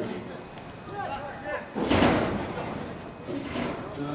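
Men's voices talking briefly, with one loud thump about two seconds in.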